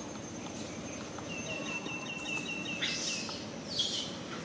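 A bird calling in a rapid series of short, even chirps, about five a second, over a steady outdoor background hiss, followed by two brief, higher falling calls near the end.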